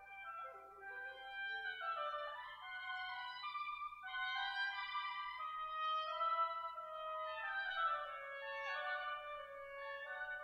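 A duet of two reed woodwind instruments, oboe or clarinet type, playing two interweaving melodic lines with no other accompaniment.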